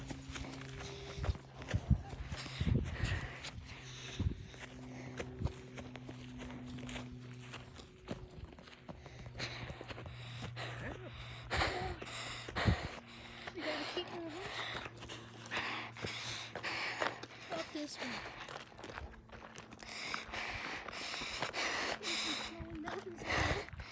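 Footsteps on a dirt mountain trail, a string of irregular scuffs and crunches, with faint voices and a steady low hum underneath.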